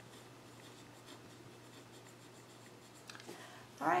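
Pen writing on paper: faint scratching as a short phrase is written out by hand.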